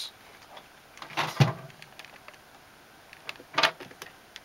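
Handling noise from a clamp meter being moved and clamped around a cable: two brief clunks, one just over a second in and a sharper one near the end.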